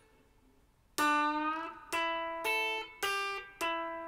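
After about a second of quiet, a Stratocaster-style electric guitar plays five single picked notes one after another, each ringing until the next: a slow blues turnaround lick in A.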